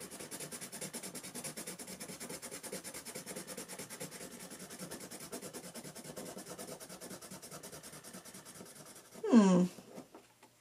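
A colorless blender pencil rubbed quickly back and forth over colored-pencil layers on paper: a dry scratching in quick, even strokes, several a second, that stops near the end. Just after it comes a brief voice sound with falling pitch.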